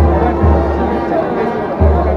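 Procession band playing a slow march: a bass drum beating in pairs, the pairs coming about every two seconds, under a held low brass note, with crowd voices mixed in.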